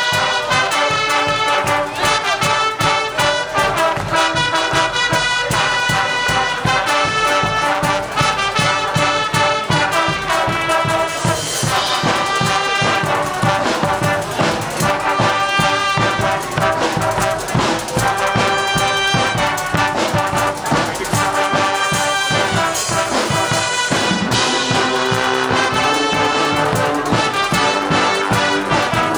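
Guggenmusik carnival brass band playing live: trumpets, trombones and sousaphones together over a steady, driving drum beat.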